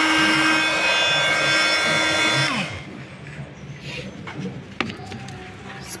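Makita DTM52 cordless oscillating multi-tool running at speed setting 6, a steady high whine, then switched off about two and a half seconds in, its pitch falling as it winds down. A single knock comes near the end.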